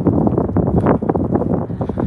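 Wind buffeting the microphone: a loud, low, uneven noise with no speech.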